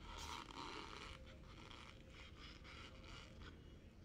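Metal spoon scraping and scooping dry cornstarch from a plate: one long gritty scrape, then several shorter scrapes.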